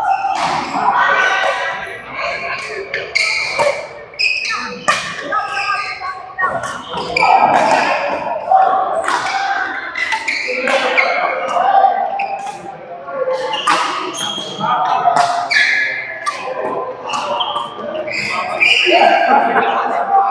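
A doubles badminton rally: sharp cracks of rackets striking the shuttlecock and thuds of players' feet on the court mat, echoing in a large hall, with voices talking throughout.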